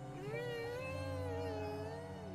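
A man's long, high, whining 'mmm' through a closed mouth, rising, held with a slight waver and falling away near the end: a mute, nasal protest in place of words.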